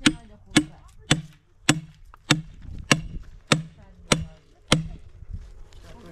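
A hand tool chopping into wood: nine sharp, evenly spaced blows, a little under two a second, stopping about five seconds in.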